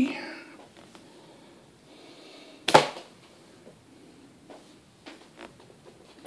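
A rubber band shot by hand over a chronograph: one sharp snap about three seconds in. A few faint small clicks follow near the end.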